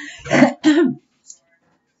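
A woman clearing her throat, two short rasps in quick succession about half a second in.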